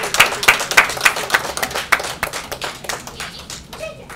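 A small audience applauding with hands clapping, the individual claps distinct; the clapping thins out and fades toward the end.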